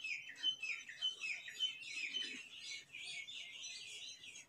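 A small bird chirping repeatedly, in short downward-sliding chirps at about two to three a second.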